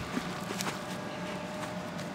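Low steady background noise with a faint hum and a few soft, short clicks.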